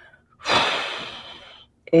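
A person's sharp, audible intake of breath about half a second in, lasting about a second and fading, just before speech resumes near the end.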